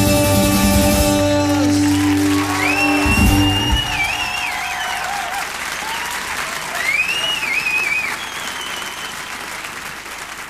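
The last chord of a live song rings out on guitar, then the audience applauds, with two long wavering whistles. The applause fades.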